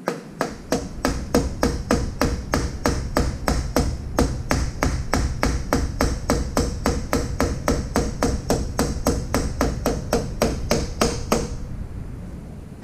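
A mallet striking the rear wheel hub and axle of a 2022 Ural motorcycle in a steady, rapid series of sharp blows, about three a second, that stops shortly before the end.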